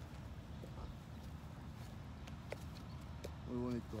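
Low, steady rumble of wind on the microphone, with a man's voice briefly just before the end.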